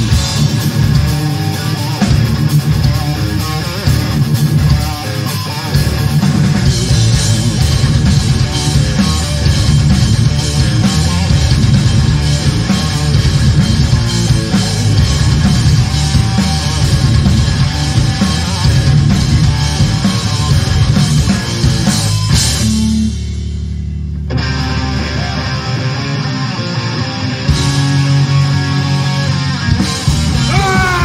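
A live punk band playing loudly, with distorted electric guitar, bass and drums and no vocals. About 22 seconds in, everything drops away except one held bass note for a couple of seconds, then the full band crashes back in. This is the changeover from one song to the next.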